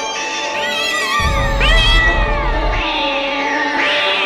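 Background music with a cat meowing over it in several long, falling cries. A deep rumble sets in about a second in and fades out nearly two seconds later.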